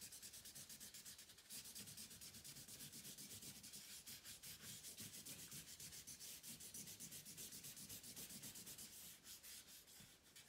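Faint rubbing of a small blending tool over a shaded drawing on paper, in quick back-and-forth strokes about five a second, smudging the shading.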